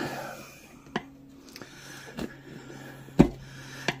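Screwdriver shafts knocking against a steel garden-cart wheel rim while prying the tire bead back over it: a few sharp knocks, the loudest near the end.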